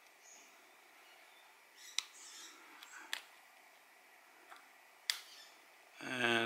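Faint, sharp clicks of a steel screwdriver edge working against the parts of a Seiko 7548 quartz watch movement, prying at the calendar click lever, which is stuck fast. There are three clearer clicks, about two, three and five seconds in, with a light rustle just after the first.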